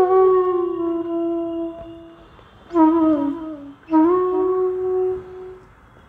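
Flute playing a slow passage in raga Jhinjhoti. A long held low note fades away over about two seconds. Two short phrases follow, each with small bends in pitch and each settling on a held note; the second note lasts over a second before dying away.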